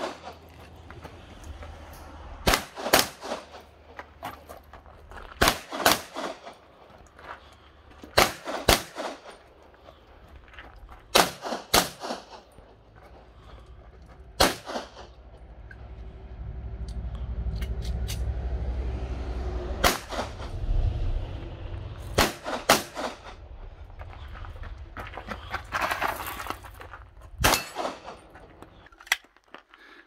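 Semi-automatic pistol shots, mostly fired in quick pairs about half a second apart, with a few seconds between pairs and a few single shots; about a dozen shots in all.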